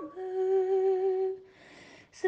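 A woman's solo voice singing a slow hymn with no accompaniment: one long, steady held note, then a short pause near the end.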